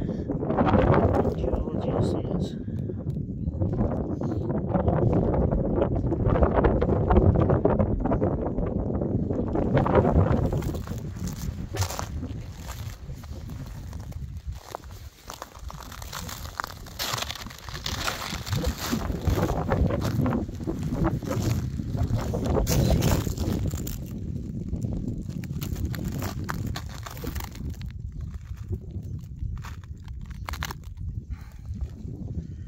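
Indistinct voices and outdoor rumble, then, from about ten seconds in, a quieter stretch of scattered crunching of footsteps on rough, porous lava rock.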